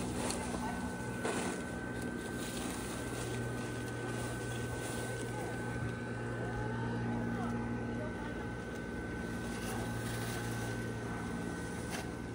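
Electric blower fan of a large inflatable Halloween yard decoration running steadily, filling it with air: a constant low hum with a thin high whine over it.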